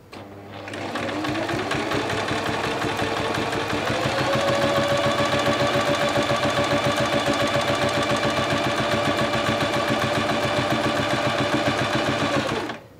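bernette London 5 electric sewing machine sewing a straight stitch through fabric. The motor speeds up over the first few seconds, its whine rising, then runs steadily at a fast, even stitching rate.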